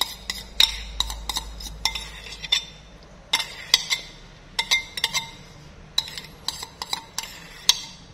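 A metal spoon scraping and clinking against a glass bowl, irregular sharp clinks a few times a second, some with a brief ring, as a thick marinade sauce is scraped out onto sliced beef.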